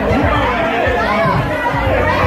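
Several people talking at once: loud, overlapping chatter in a room.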